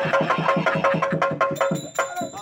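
Stage-play accompaniment: fast, even drum strokes, about seven a second, over a steady held note. The strokes stop shortly before the end, and a brief high ringing tone follows.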